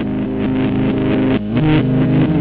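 Guitar intro of a screamo song: picked, sustained notes that change pitch a few times, growing steadily louder.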